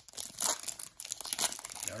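A trading-card pack's foil wrapper crinkling irregularly in the hands as the pack is opened.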